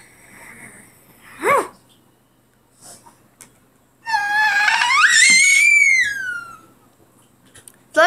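A child's high-pitched pretend wail, one long cry that rises and then falls, about four seconds in, played as a toy character crying; a brief shorter vocal sound comes about a second and a half in.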